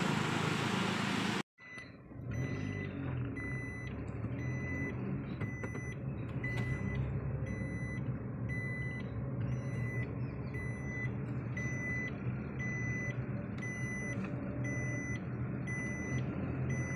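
Rushing canal water for about the first second and a half, then, after a cut, a car cabin at speed: steady engine and road rumble with a high electronic warning beep repeating about once a second.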